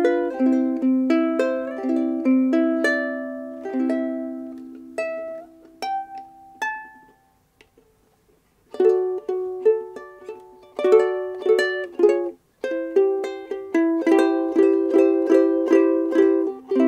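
Kamaka HF-1D deluxe soprano ukulele with a solid koa body, plucked by hand: a melody over chords that slows and dies away to a pause about seven seconds in. The playing picks up again with faster, fuller chords about nine seconds in. The tone is glossy and full with long sustain.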